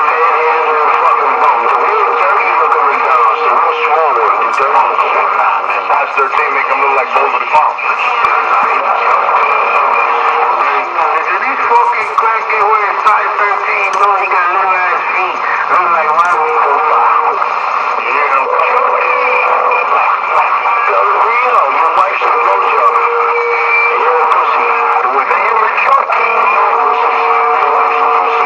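People talking with their voices overlapping, too jumbled to make out words. The sound is loud and thin, with no bass, like speech heard through a radio or phone speaker.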